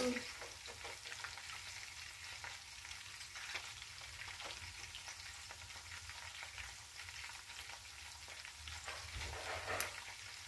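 Food frying in oil in a stainless saucepan on the stove: faint, steady sizzling with small crackles, over a low steady hum.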